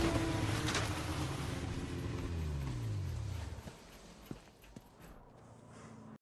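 Snowmobile engine whine sliding down in pitch and fading away as the machine skids off across the ice. A couple of faint knocks follow near the end.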